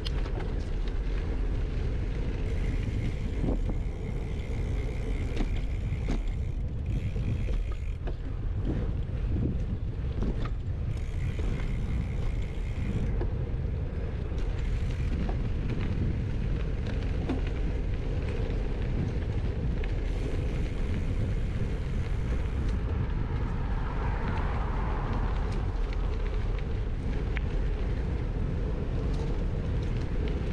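Wind on a bike-mounted action camera's microphone over the steady rumble of a Scott Addict Gravel bike's tyres rolling on a dirt path, with scattered sharp clicks.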